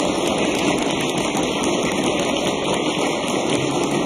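Members of a parliamentary chamber applauding: a dense, steady clatter of clapping.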